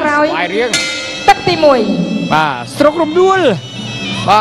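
Traditional Kun Khmer ring music: a nasal reed pipe plays a wavering melody that bends up and down in pitch, with a commentator's voice mixed over it. A single sharp clink sounds about a second in and is the loudest moment.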